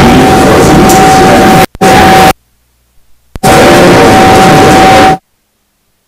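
Loud, distorted noise with a steady high tone from the table microphone's sound system. It cuts out suddenly about a second and a half in, comes back briefly twice and stops about five seconds in, while the microphone is being handled.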